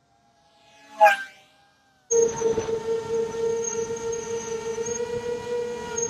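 Racing quadcopter's motors and propellers whining in flight: a short swelling whoosh that rises and falls about a second in, then after a brief gap a steady high whine from about two seconds in.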